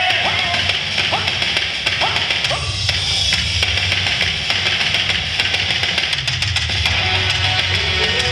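Loud rock-style yosakoi dance music with electric guitar and drums, with many sharp clacks from the dancers' wooden naruko clappers scattered through it.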